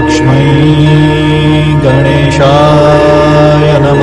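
Devotional mantra music: a slow chanted melody over a steady low drone, with a melody line that glides in pitch about two and a half seconds in.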